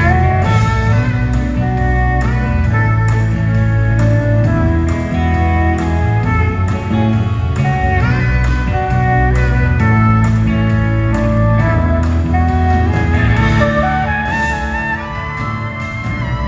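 Live band playing an instrumental passage, led by electric guitar with notes that slide into pitch, over bass and a steady beat.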